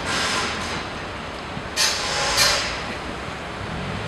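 Street traffic rumble with three short hissing bursts, one at the start and two about two seconds in, close together.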